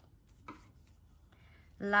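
Faint handling of old paper greeting cards, two soft rustles or taps about half a second and a second and a half in, in an otherwise quiet room; a woman starts speaking near the end.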